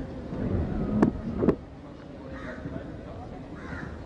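Cricket ground ambience with a crowd murmur: two sharp knocks about half a second apart, about a second in, as the delivery is played, then crows cawing several times over the crowd.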